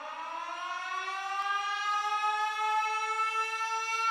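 A wind-up air-raid siren, sampled as the opening of a hip-hop track, spinning up slowly: one long tone rising in pitch and growing steadily louder.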